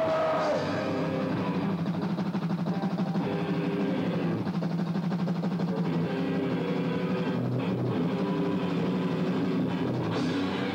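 Live metal band playing loud distorted electric guitar riffs over a drum kit. A held high note cuts off about half a second in, and the riffing runs on.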